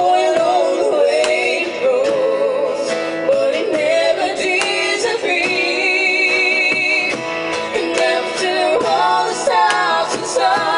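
A woman and a man singing a ballad duet live to strummed acoustic guitar and cajón.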